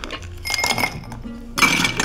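Ice cubes tipped from a metal ice scoop clinking into a cut-glass tumbler, once about half a second in and again more loudly near the end, the glass ringing briefly each time, over background music.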